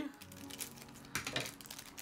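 Crinkling of a foil blind-bag wrapper being handled and opened, an irregular run of small crackles.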